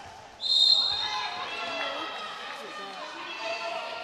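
A referee's whistle gives one short, shrill blast about half a second in, followed by the voices of players and spectators in the hall.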